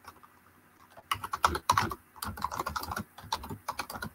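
Typing on a computer keyboard: a quick run of key presses starting about a second in, a brief pause, then a second run.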